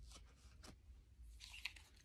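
Near silence with faint rustles and small snaps of tarot cards being handled, a couple of ticks near the start and a short cluster in the second half.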